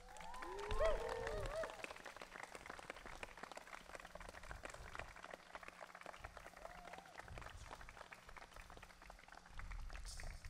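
Guests clapping and cheering, with rising and falling whoops in the first two seconds, then steady applause that carries on to the end.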